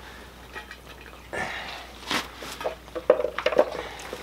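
Dry cat food being scooped and dropped into bowls: a few scattered rustles and clicks, with a cluster of clicks near the end.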